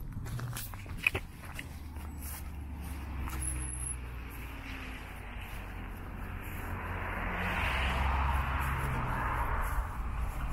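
Road traffic with a low rumble throughout and tyre noise swelling over the last few seconds as a vehicle passes, with a few footsteps through grass early on.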